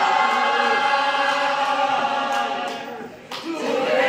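Many voices singing together with no instruments, holding long notes. The singing dips briefly about three seconds in, then comes back near the end.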